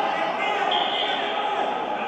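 Voices calling out in a large, echoing sports hall, with a brief high tone about a second in.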